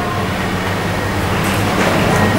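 A steady low hum and rumble of background noise in the room.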